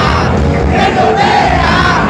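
Rock singer belting long, wavering held notes over a loud live rock band, filmed close on a phone.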